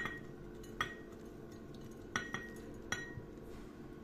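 A spoon clinking against a glass bowl about five times as chopped green pepper is scraped out into a glass jar, several of the light taps leaving a short glassy ring.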